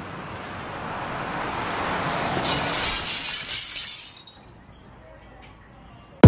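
A swelling whoosh of noise that builds for about two and a half seconds, then a crackling crash like breaking glass that dies away over a second or so, leaving faint hiss: a sound-effect lead-in to the track.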